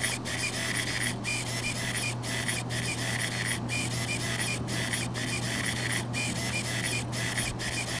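Micro servo in the head of an animatronic skeleton fish prop whirring as it works the fish back and forth, with a brief pause about once or twice a second between strokes.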